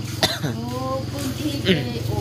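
A person talking, with a cough, over a steady low hum.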